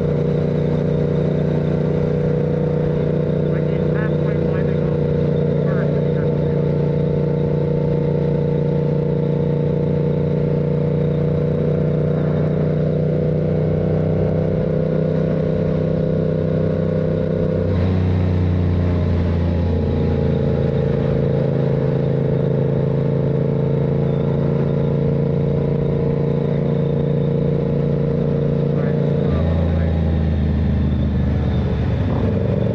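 Yamaha MT-07's parallel-twin engine running at a steady pace under way. Its note changes about 18 seconds in and again near the end.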